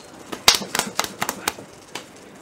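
A quick, irregular run of about nine sharp clicks or knocks over about a second and a half, the loudest about half a second in.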